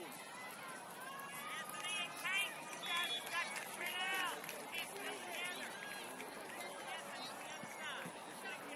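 Distant, untranscribed shouts and calls from players and spectators across an outdoor soccer field, busiest in the middle of the stretch, over a steady open-air background.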